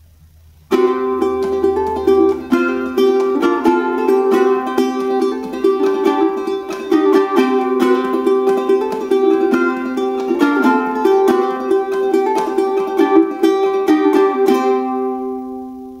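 Fluke tenor ukulele with a solid spruce top and hardwood fretboard, played with many quick strums. The playing starts under a second in and fades out near the end.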